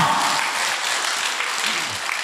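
Large seated audience applauding, the clapping easing off slightly toward the end.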